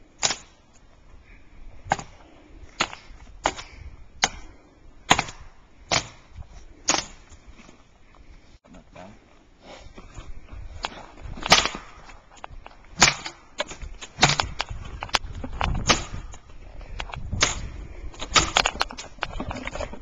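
Dead wood cracking and snapping: a series of sharp, irregular cracks, about eight in the first seven seconds. After a lull they come thicker and closer together over a rustle of brush.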